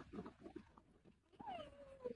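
Mostly near silence, with one faint high whine that falls in pitch, about a second and a half in.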